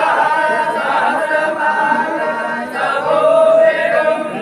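A crowd of sadhus chanting together, many overlapping male voices held in a steady, continuous chant.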